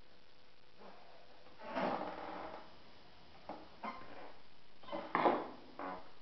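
Workshop handling noises as a hand tool is worked against a composite part on a bench: several short, irregular scrapes and creaks, the loudest a little after five seconds in.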